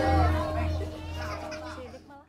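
Gamelan accompaniment fading out at the end of a piece, its held tones dying away, with children's voices over it.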